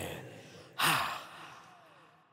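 The end of the song decaying in reverb, then a single short, breathy vocal gasp with a falling pitch about three quarters of a second in, fading out as the track ends.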